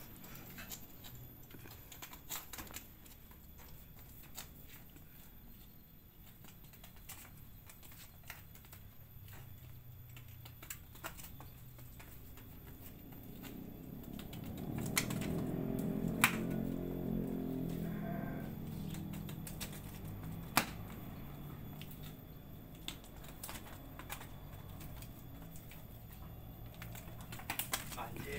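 Irregular light clicks and taps of a young Garut ram's hooves on stone paving. A low sound swells and fades over several seconds midway.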